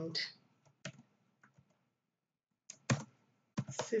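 Computer keyboard keystrokes: a few separate taps spread out, with pauses between them.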